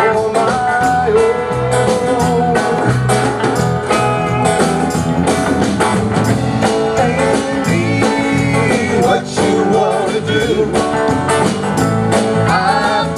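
Live band playing a song with acoustic and electric guitars, bass guitar and a drum kit, the drums keeping a steady beat under a wavering lead melody line.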